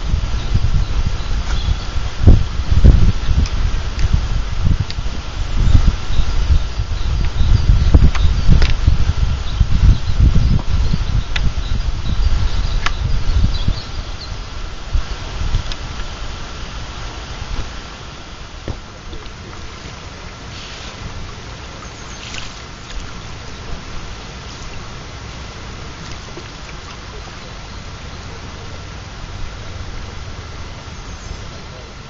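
Wind buffeting the microphone in loud gusts of low rumble, with a few handling knocks and rustles. About fourteen seconds in it drops to a quieter, steady outdoor hiss.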